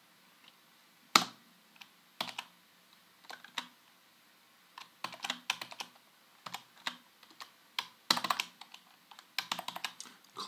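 Computer keyboard typing: keystrokes in short, irregular bursts with pauses between them, the sharpest about a second in.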